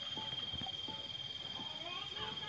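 Quiet background with a steady high-pitched cricket trill and faint soft rustling as a leopard cat kitten is stroked. Near the end, faint rising pitched notes begin.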